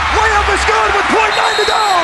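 A TV commentator's voice calling the play, loud and unclear, over steady arena crowd noise.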